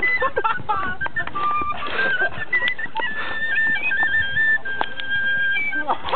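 A small flute playing a simple tune of short stepping notes, ending on a long held note near the end. A few sharp knocks sound through it.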